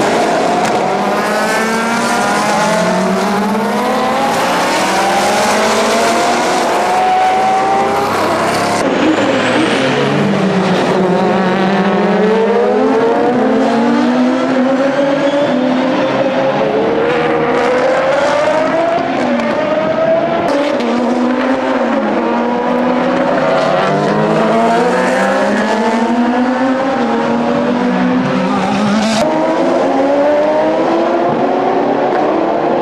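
Several GT and sports-prototype race cars passing at speed, their engine notes overlapping without a break. The pitch climbs and drops back again and again as the cars accelerate up through the gears.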